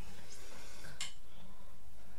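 A single sharp metallic click about a second in, from a metal microphone stand being picked up and handled, over a steady low hum.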